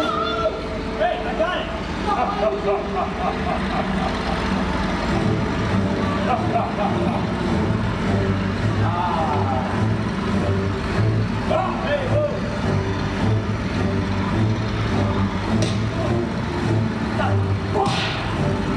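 Steady low engine drone, pulsing slightly, from the stunt show's flying-wing plane effect, coming in about five seconds in, under shouting voices.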